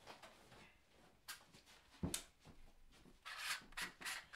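Faint handling noises as a spare camera is picked up and set up: two light knocks, about one and two seconds in, then rubbing and rustling near the end.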